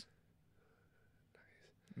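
Near silence: room tone, with a faint short sound near the end.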